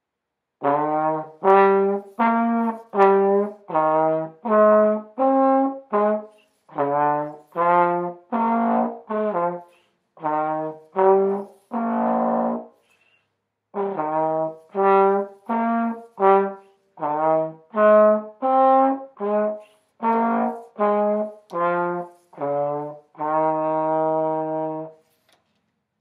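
Unaccompanied plastic trombone playing a slow broken-chord exercise: separate, detached notes stepping up and down through each chord, about one and a half a second. There is a longer note about halfway, a brief pause, then more chords, ending on a long held note.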